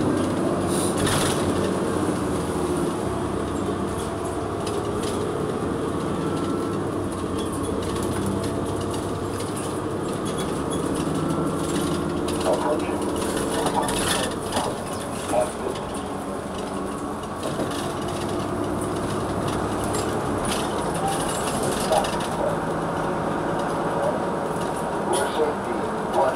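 Cummins Westport ISL-G natural-gas inline-six engine of a New Flyer XN40 city bus heard from inside the cabin, running under load as the bus gets under way, growing louder just at the start. Road rumble and a few sharp knocks or rattles come through near the middle and near the end.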